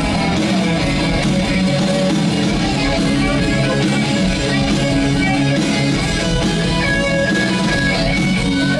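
Live rock band playing an instrumental passage, with an electric guitar out front over bass and steady drums.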